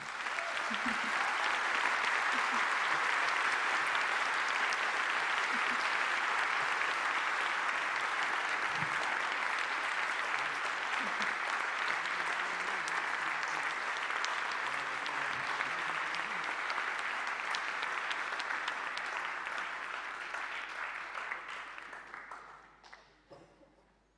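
Audience applauding, a dense sustained clapping that starts at once and gradually dies away near the end.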